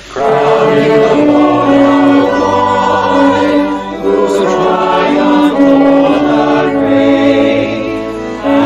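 Mixed choir of many voices singing a hymn over a sustained instrumental accompaniment, with a short breath between phrases about four seconds in.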